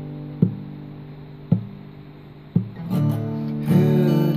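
Acoustic guitar playing slowly: a ringing chord fades while single notes are picked about once a second, then the strumming grows louder and fuller near the end.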